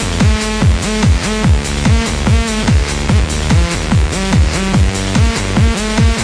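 Electronic dance music in a techno/trance style: a kick drum about twice a second, each hit dropping in pitch, under held synth chords.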